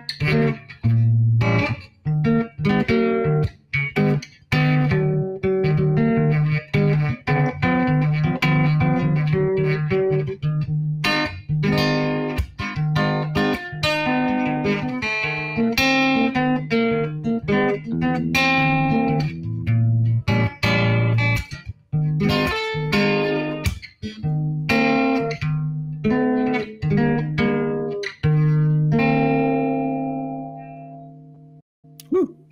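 Kite Guitar, a guitar fretted in 41-tone equal temperament, played as a blues with dominant seventh chords voiced with the mellow harmonic seventh. The picked chords and bass notes run on throughout, and near the end a last chord is left to ring and fade.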